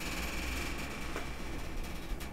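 Steady background hiss of room noise, with no distinct event.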